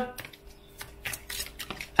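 Faint rustling and soft clicks of a tarot deck being shuffled by hand, cards sliding and tapping against each other.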